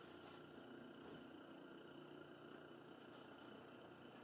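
Near silence with a faint, steady hum from the electrical test rig.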